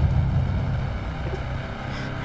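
Low, steady rumbling drone of a dark suspense music cue, easing off slightly toward the end.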